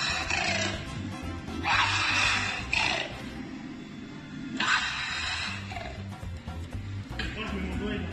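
Animatronic raptor dinosaur playing recorded harsh, shrieking calls through its speaker, about four of them, each under a second long. Background music with a low, steady beat plays underneath.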